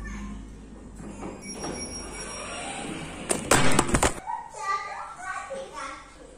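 A quick, loud run of several knocks lasting under a second, about three and a half seconds in, among children's voices.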